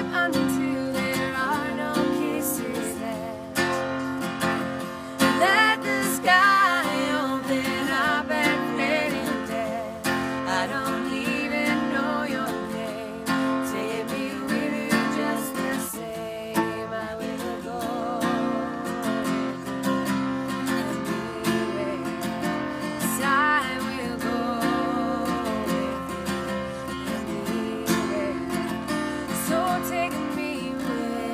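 Acoustic guitar strummed and picked while two women sing a slow folk song together.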